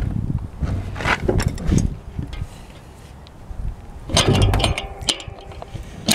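Steel spanner clicking and clinking against a crank extractor tool on a unicycle crank as it is fitted and turned, a handful of sharp metal clicks over a low rumble.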